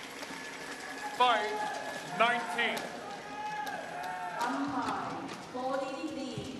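Several short, high-pitched shouts in a large sports hall, about a second in and again around two seconds in, followed by lower voices over the hall's steady background.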